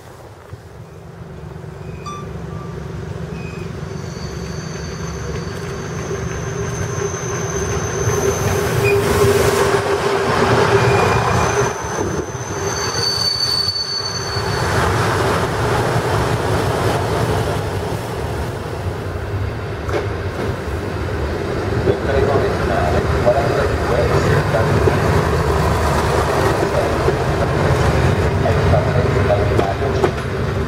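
ALn 663 diesel railcar approaching and passing close, its engine running and growing louder over the first ten seconds. Thin, high wheel squeal comes and goes from about four to fifteen seconds in.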